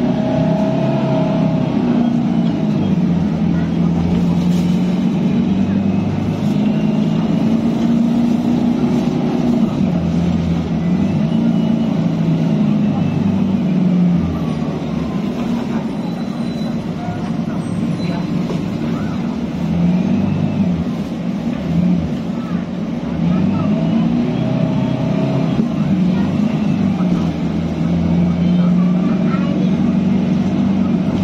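Inside a moving city bus: the engine and drivetrain drone, the pitch rising and falling several times as the bus speeds up and slows, with passengers' voices faintly behind it.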